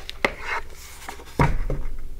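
Pages of a hardcover picture book being turned, with a few light clicks and a soft papery rustle, then a dull knock about one and a half seconds in as the book is handled against the tabletop and lifted up open.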